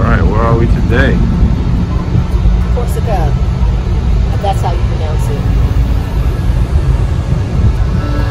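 Steady, loud low rumble on a cruise ship's open deck, with a few short, indistinct voices near the start and again a few seconds in.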